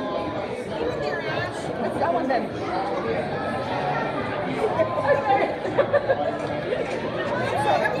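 Diners' chatter filling a busy restaurant dining room: many voices talking over one another, with a few louder voices close by around the middle.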